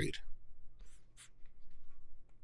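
A pause in a quiet small room: two short, faint scratching sounds about a second in, over a low, steady hum.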